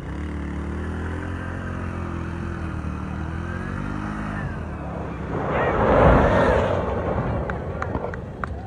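Off-road rally car's engine running, its pitch wavering up and down with the throttle, then a loud rushing surge about five and a half to seven seconds in as the car goes past close by.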